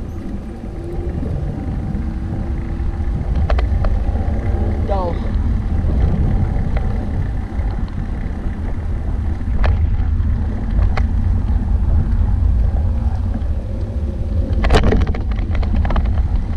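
Wind buffeting a GoPro's microphone while a recumbent trike rolls along a street, giving a steady low rumble. A few short sharp clicks and rattles come through it.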